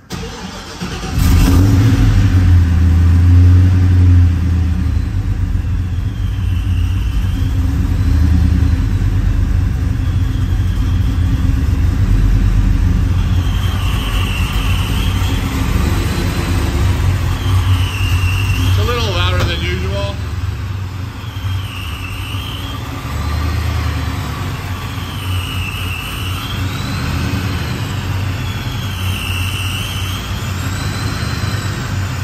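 The Chevelle's supercharged LS V8 starting about a second in and then idling steadily. A faint high whistle rises and falls about every three seconds in the second half.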